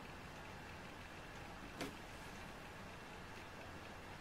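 Low, steady room noise with a single faint click a little before the two-second mark.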